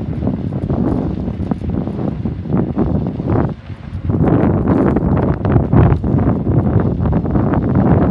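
Strong wind buffeting the phone's microphone, a loud low rumble that dips briefly about three and a half seconds in and then gusts harder.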